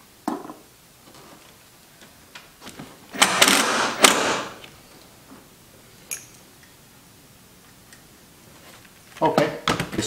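Cordless drill/driver driving a self-tapping screw into the sheet metal of the engine bay in a short burst of about a second, starting about three seconds in. A few small clicks and knocks of handling the breaker and screws come before and after it.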